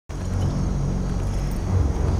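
A low, steady rumbling drone with a few deep held tones, the opening sound bed of a film trailer's score.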